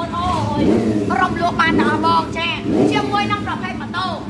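A woman speaking loudly over the steady low hum of an idling motorcycle engine.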